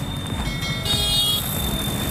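Outdoor street noise: a steady low rumble, with a brief high-pitched ringing tone from about half a second to a second and a half in.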